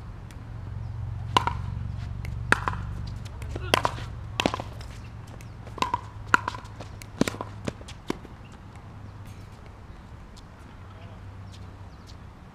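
A ball rally on a hard court: a string of sharp hits and bounces, about a dozen over six seconds, stopping about eight seconds in, over a steady low rumble of wind on the microphone.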